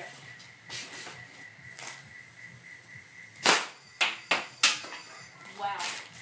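Compressor-fed homemade air gun fired once, about three and a half seconds in: a loud sudden blast of released air. It is followed by three sharp knocks about a third of a second apart as the capacitor fired from it strikes and bounces about.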